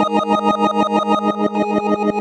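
Teenage Engineering OP-1 synthesizer playing a held keyboard-style chord with its tremolo LFO on, the volume pulsing rapidly and evenly, about nine times a second. Another note joins the chord near the end.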